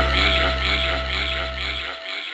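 Synthwave music fading out at the end of a track: a sustained, wavering synthesizer texture over a low bass note that dies away near the end.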